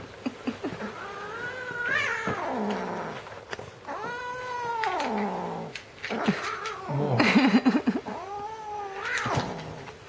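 Cat yowling: three long, drawn-out calls, each rising and then falling in pitch.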